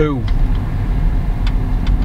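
Car interior noise while driving: a steady low rumble of engine and road noise heard from inside the cabin.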